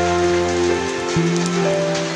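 Steady rain falling on the ground, with slow background music of long held notes over it; the chord shifts about a second in.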